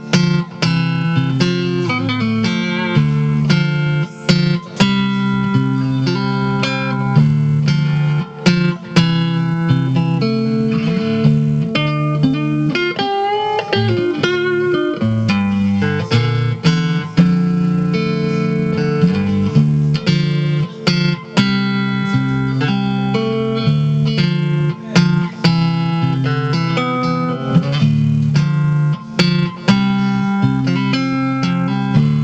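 Stratocaster-style electric guitar played through a small combo amp: a steady run of chords and single picked notes with a few brief breaks, and wavering bent notes about halfway through.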